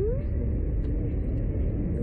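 A steady low rumble, with a short rising "Oh?" from a man right at the start.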